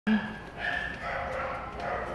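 Small dog whining in high, thin whimpers, after a short louder sound at the very start.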